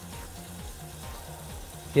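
Hot water tap running steadily, a soft even hiss of water as it is drawn through the newly installed undersink heater, with quiet background music underneath.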